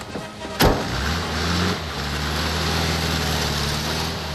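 A sharp knock, then a vehicle's engine or motor running with a steady low hum and hiss, holding an even pitch.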